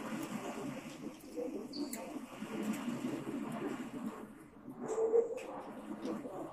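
Indistinct background voices in a restaurant dining room, a continuous murmur with a few light clicks or clinks.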